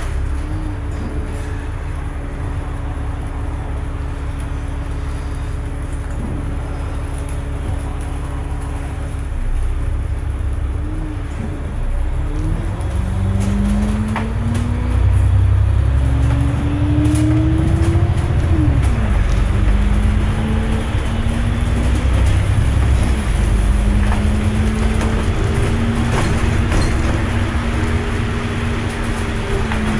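Diesel engine of a single service bus, heard from inside the bus: a steady idle while it waits at a red light, then it pulls away with the engine note rising. The pitch drops back at two gear changes.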